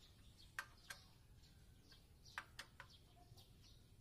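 Near silence with a few faint, sharp clicks and taps of a hand socket tool on the engine's cylinder head, scattered irregularly: two close together about half a second in, then a cluster of three a little past the middle, and one more near the end.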